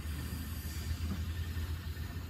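A small diesel engine idling steadily, a low even rumble with a faint hiss above it.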